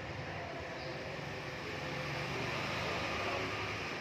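Steady background noise: a low hum with hiss and no distinct events.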